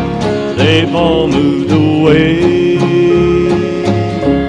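Men singing a slow country hymn in harmony over strummed acoustic guitar and a bass on the beat; after a short sung phrase, the voices hold one long note through the second half.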